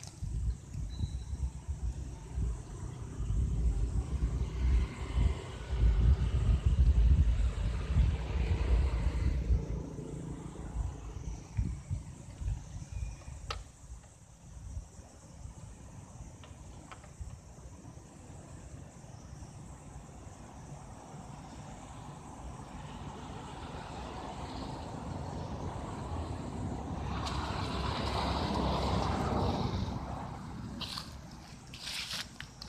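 Outdoor rumbling noise, loudest and most uneven over the first ten seconds, then a vehicle passing: its sound swells for several seconds to a peak near the end and falls away.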